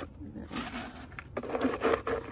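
Wet marble chips crunching and grating against a plastic pot as it is pushed and shifted down into them, in two short bursts.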